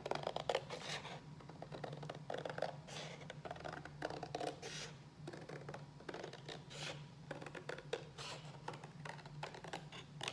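Hand scissors cutting through thick watercolor paper along a straight line, in a series of short, irregular snips.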